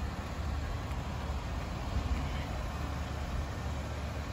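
Steady low rumble of outdoor background noise on a parking lot, with no distinct event standing out.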